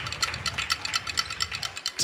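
Rapid, even clicking, about ten clicks a second, with a faint low rumble beneath.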